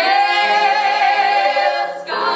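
A woman singing one long held gospel note with vibrato, starting at once and cut off just before the end.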